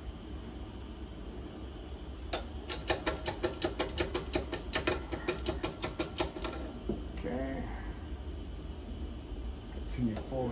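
A one-ton arbor press being worked: a single metallic click, then a quick, even run of clicks, about six a second, for three to four seconds.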